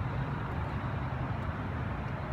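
Steady low rumble of outdoor background noise, with no distinct events.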